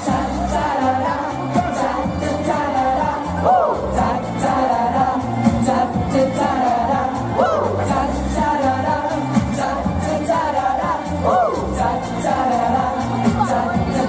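Live pop music over a PA: a male vocalist performing into a handheld microphone over a backing track with a steady beat.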